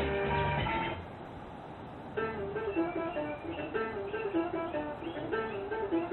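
A car stereo playing Bluetooth-streamed music, heard from outside the car. About a second in, the song cuts off as the track is skipped. After a short lull, the next song starts about two seconds in with a plucked-guitar line.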